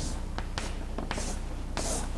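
Chalk drawing on a blackboard in several short strokes, with a steady low hum underneath.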